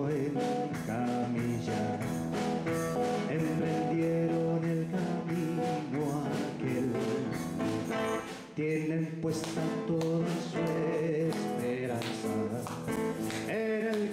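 A man singing a worship song to an acoustic guitar strummed in a steady rhythm, with a short break in the strumming about eight and a half seconds in.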